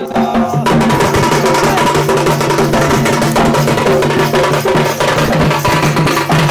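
Two-headed barrel drum beaten in a fast, dense dance rhythm. It comes in about half a second in, as a sung line ends.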